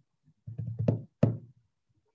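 A few sharp knocks or taps in quick succession, the two loudest about a third of a second apart, picked up over a video-call microphone.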